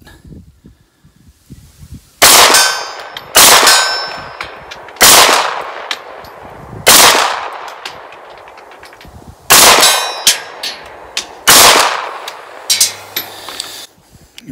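Six 9mm shots from a SAR B6C compact pistol in slow aimed fire, one every one to two and a half seconds, each with a short echo. Fainter sharp pings after several shots, typical of bullets striking steel targets downrange.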